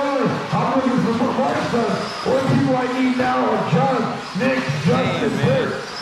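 People's voices talking throughout.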